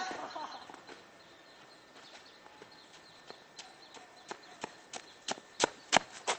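The end of a man's shout right at the start, then footsteps on gravelly dirt coming toward the microphone, a few short crunching steps a second getting louder near the end.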